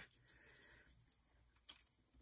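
Near silence with faint rustling of copper foil tape and paper being handled on a tabletop.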